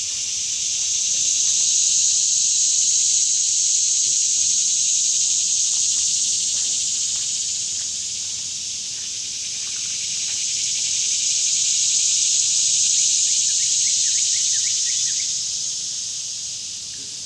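Chorus of cicadas buzzing in a high, continuous band that swells, dips about halfway through and swells again.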